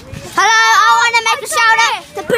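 A child singing a high, drawn-out note close to the microphone, starting about half a second in, with the pitch holding steady and dipping briefly a couple of times.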